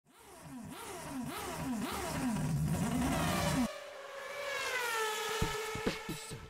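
Cartoon engine sound effect for a small farm vehicle: the engine revs in quick rising swoops about twice a second, then cuts off suddenly. A single tone then slides down in pitch and levels off.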